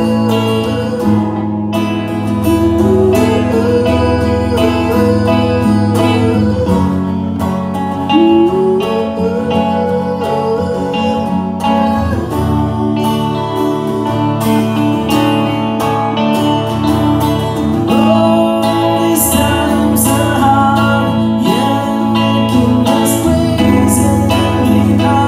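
Live acoustic music: a male voice singing over acoustic guitar, with a second small acoustic stringed instrument played alongside.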